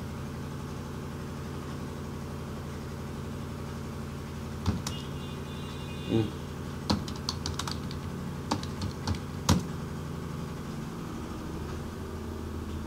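Computer keyboard keystrokes: a few single clicks about halfway through, then a quick run of keystrokes and a few more single clicks, over a steady low hum. The first few seconds hold only the hum.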